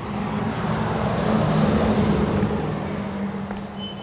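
A motor vehicle passing by: a steady engine hum with road noise that swells to a peak about halfway through and then fades.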